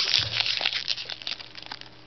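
Foil Magic: The Gathering booster-pack wrapper crinkling in quick crackles as it is handled in both hands, busiest in the first second and thinning out after.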